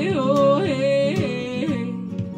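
A woman sings a wordless held note that breaks into about four quick up-and-down vocal flips, over a strummed acoustic guitar. Her voice drops out near the end, leaving the guitar.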